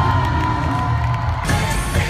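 Live pop concert music over an arena PA, recorded from the crowd: a long held high note over heavy bass while the crowd cheers. About one and a half seconds in, the music changes as the band comes in with a new section.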